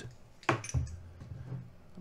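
Hands turning over a homemade aluminium halo antenna and its aluminium mounting bracket: a light metallic knock about half a second in, then faint handling.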